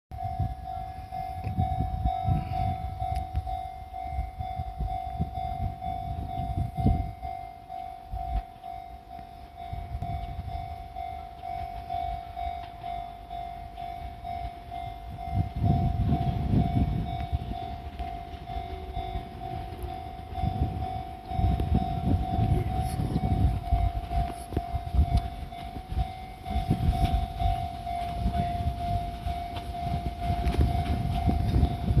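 Japanese level-crossing alarm sounding a steady, evenly repeating electronic ding. Beneath it is the low, uneven rumble of two Fujikyu 6000-series (ex-JR 205-series) electric trains pulling in side by side, louder in the second half.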